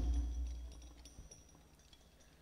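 Al-Banjari rebana frame drums' last stroke ringing out, its low boom fading away over about a second into near silence.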